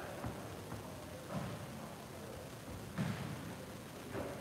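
A few faint, short thuds from two boxers sparring in a ring, near the start, about a second and a half in and about three seconds in, over quiet gym room tone.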